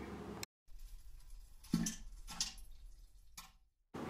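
Three short plops of something dropping into toilet water in a quiet toilet stall, spaced about a second apart; the first is the loudest.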